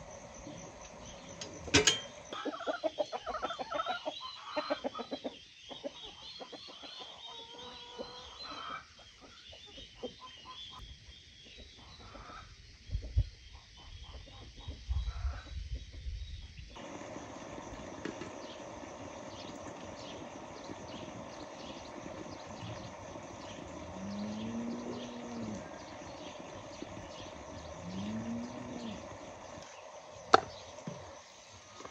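Knocks and clatter at an outdoor wood-burning stove's firebox, with a sharp knock about two seconds in and high chirping behind. Then a farmyard ambience in which a domestic fowl gives two drawn-out, arching calls near the end.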